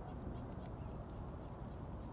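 A steady low rumble of wind buffeting the phone's microphone outdoors.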